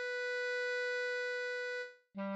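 A B♭ clarinet holding one long, steady note that fades out near the end.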